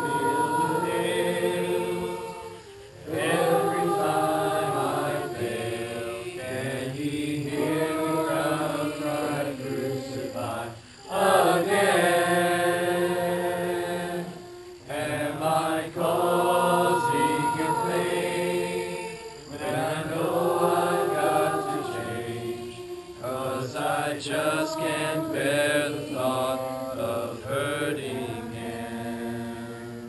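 A congregation of many voices singing a hymn together, in long phrases broken by short pauses for breath.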